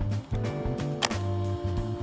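Background music with a steady bass line. About a second in there is one sharp snap: a hand pop riveter breaking off a rivet's mandrel as the rivet sets.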